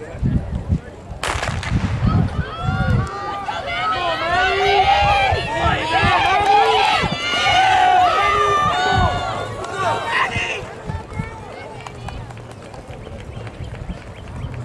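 A starting pistol cracks about a second in, then spectators yell and cheer the sprinters for several seconds before the noise dies down near the end.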